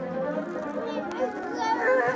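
Cartoon soundtrack played through a TV speaker: several character voices calling out together over background music.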